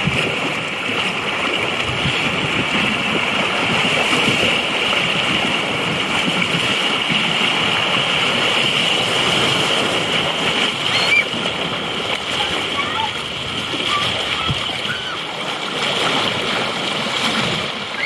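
Churning, splashing water of an outdoor pool's rapids channel: a steady rush of turbulent water with splashes close to the microphone, which sits at the water's surface. A few short high squeaks come through in the second half.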